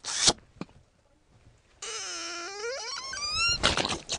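A man's short laugh, then a vocal sound effect: one long squeaky wail whose pitch sinks and then climbs steeply high, ending in a brief breathy burst.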